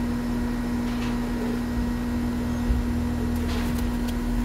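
Steady machine hum with a constant mid-pitched tone over a low rumble, and a single soft thump about two-thirds of the way through.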